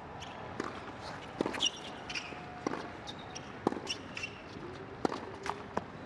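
Tennis rally on a hard court: sharp pops of the ball off racquet strings and off the court surface, about one a second.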